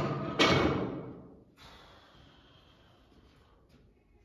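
Two sudden heavy knocks, the second and louder about half a second in, each dying away over about a second in the room.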